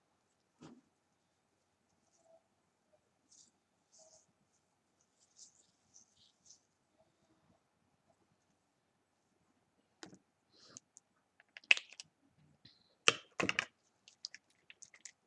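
Wet, curly human-hair wig being worked through by fingers with a curl-styling cream, giving faint scattered crackles and clicks of hair and long nails. A few sharper, louder clicks come near the end.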